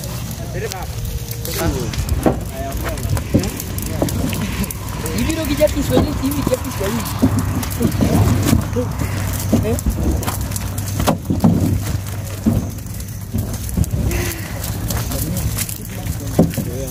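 Indistinct talk from several people over a steady low hum, with scattered short crackles and knocks.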